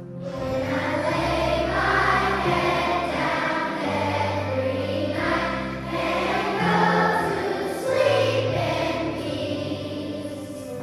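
Children's choir singing a patriotic song together over an instrumental backing track; the singing and the fuller accompaniment come in right at the start.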